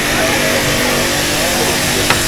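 Pressure-washer water gun spraying wild mushrooms in a plastic basket: a steady hiss of water over the even hum of the pump motor.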